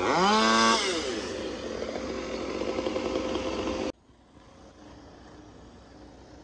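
Diesel engine of a Western Star self-loading log truck revving up and settling back as the loader crane works, then running loud and steady with a constant tone over it. About four seconds in the sound cuts off abruptly to a much quieter steady running.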